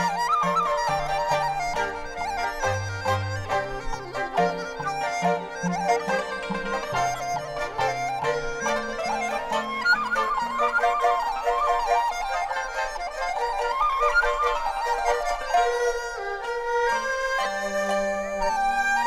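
Chinese bamboo flute (dizi) playing an ornamented, sliding melody over a small Chinese traditional ensemble. The low accompanying notes drop out about halfway through, leaving the flute over lighter accompaniment.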